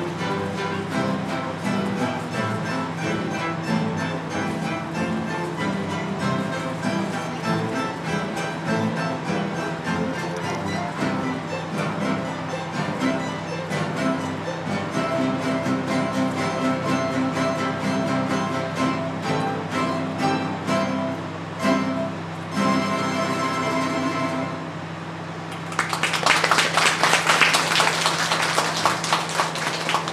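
Mandolin orchestra of mandolins, classical guitars and a double bass playing a piece that closes on a held chord. A few seconds later an audience applauds.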